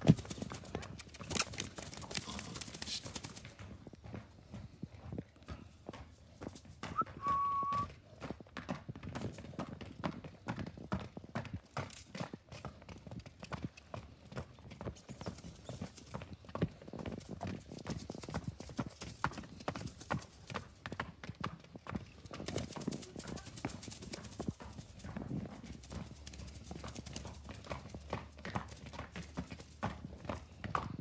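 Hoofbeats of a horse moving at a brisk pace: many quick, irregular hoof strikes throughout, with a short high whistle-like tone about seven seconds in.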